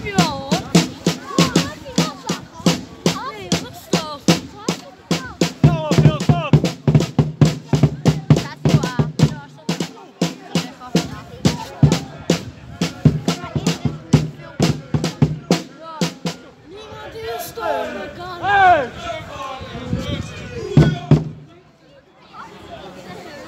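Supporters' marching drums beaten with soft mallets in a fast, even rhythm of about three beats a second, with people's voices alongside. The drumming mostly stops about sixteen seconds in, leaving voices and a few last beats.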